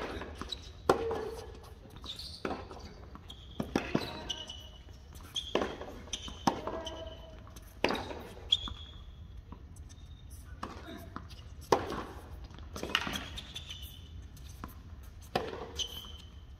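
Tennis rally on a hard court: balls struck by rackets and bouncing, a sharp hit or bounce every second or so.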